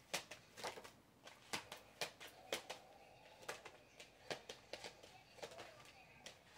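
A tarot deck being shuffled by hand, with soft, irregular clicks and slaps of cards, roughly two a second.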